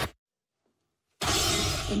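A second of dead silence broken by a sudden loud crash, a horror-trailer shock hit with a glassy, shattering quality. It carries on as a hissing rush.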